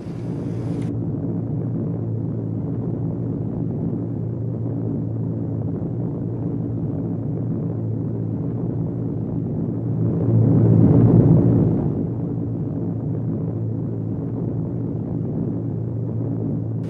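Steady drone of multi-engine aircraft on an old, muffled film soundtrack. It swells louder for a moment about ten to twelve seconds in, then settles back to the same drone.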